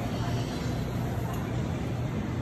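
Shopping cart wheels rolling over a tiled store floor, making a steady low rumble.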